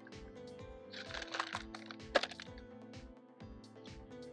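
Background music with a steady beat. About a second in comes a short burst of rattling and crackling, ending in one sharp snap just after two seconds, as the cut plastic pot is pulled away from a root ball packed with leca clay pebbles.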